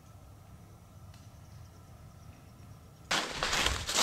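Faint, steady woodland quiet for about three seconds, then a sudden loud rustling and crackling of close handling noise near the end.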